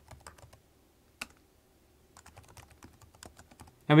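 Typing on a computer keyboard: a few keystrokes, then a single louder keypress about a second in, then another run of keystrokes in the second half.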